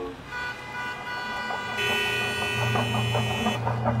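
Street ambience with a car horn: a steady, held horn tone sounds for about two seconds in the middle. A low drone swells in beneath it in the second half.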